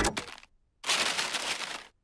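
Music stops, and about a second in a layer of wrapping paper is ripped off a parcel: one noisy tearing rustle lasting about a second, which stops abruptly.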